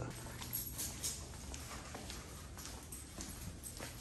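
Footsteps on a hard hallway floor, an irregular run of light steps, over a steady low hum.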